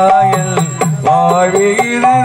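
Live stage-drama music for a Tamil folk song: a sustained, wavering melody over a steady drum beat of about four strokes a second.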